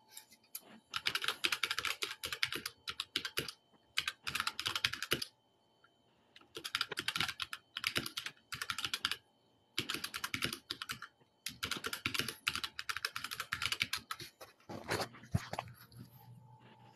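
Typing on a keyboard: five bursts of rapid key clicks with short pauses between them, as a search for a source is typed in.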